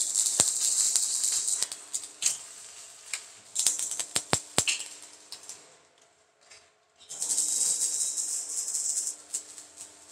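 Electric arc welding on a steel concrete-mixer drum: a crackling, sputtering hiss that comes in three runs, the first about two seconds long, a short one around four seconds in and another of nearly three seconds near the end, with a low steady hum under each.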